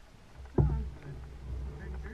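Kayak paddling: a sudden hard thump about half a second in, followed by a low rumble that slowly fades, as the paddle works against the water and hull.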